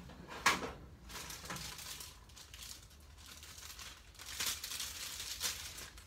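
Handling and rummaging while a new paintbrush is fetched: a sharp knock about half a second in, then irregular rustling and crinkling, as of plastic packaging.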